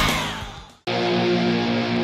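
Loud rock music fades out over most of a second to silence. A different piece of guitar music then starts abruptly on a held, distorted chord.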